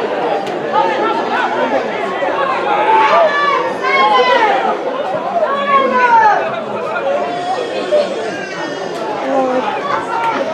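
Several voices calling and chattering over one another, indistinct, from rugby players shouting at a ruck and spectators talking. The louder calls come around the middle.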